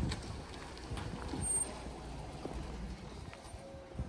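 Low, steady rumble of truck engines running, with a few faint knocks and clicks.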